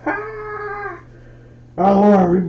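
A person voicing a plush cat puppet makes a drawn-out, meow-like vocal sound lasting about a second. A lower human voice sound starts near the end.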